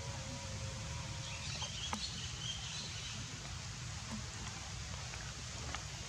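Outdoor ambience: a steady low rumble with faint high chirps in the first half, a steady hum that stops about a second and a half in, and a couple of soft clicks.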